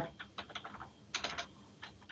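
Typing on a computer keyboard: a run of quick keystroke clicks, irregularly spaced, with a brief flurry a little past halfway.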